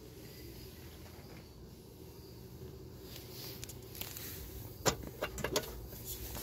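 A few sharp clicks and knocks in the second half as a car's glovebox is unlatched and its door swung open, over a faint low background hum.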